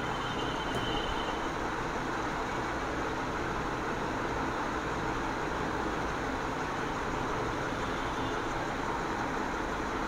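Steady, even background noise, like a room's air conditioning or fan heard through a phone microphone, with no distinct events.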